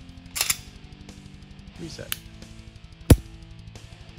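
Sharp metallic clicks from the trigger of an unloaded Shadow Systems DR920 9mm pistol in dry fire: a quick double click about half a second in, a faint click about two seconds in, and a louder single click about three seconds in, the trigger resetting and breaking as it is worked.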